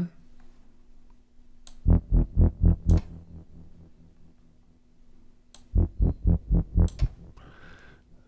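Retrologue 2 software synth bass, the Dark Mass 8th Wave Bass patch with tube distortion and its filter cutoff turned down, played in two short runs of quick staccato bass notes. Each run has about five or six notes, roughly five a second, and the runs are a few seconds apart.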